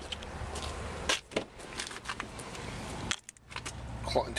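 A car door being handled and someone getting into the driver's seat: a few sharp clicks and rattles over a steady low hum, with a short hush just after three seconds.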